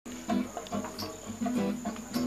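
Acoustic guitar picking single notes at the start of a song, about three notes a second, over a steady high-pitched cricket trill.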